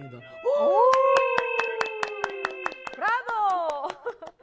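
Two people clapping steadily, about five claps a second, under long drawn-out vocal exclamations from two voices, with rising exclamations near the end.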